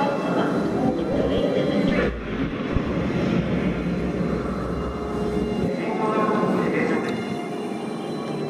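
Voices, then a deep, steady rumble lasting about four seconds, then voices again.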